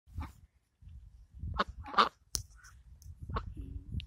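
Ducks calling with a few short, separate quacks spread across a few seconds.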